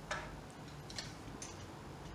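Wooden boat shuttle thrown through the open shed of a floor loom and caught: a few faint, light clicks, one near the start and two more about a second in.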